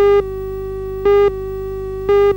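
Television countdown leader: a steady electronic tone with a louder short beep on each second as the numbers count down, here at the start and again about a second in.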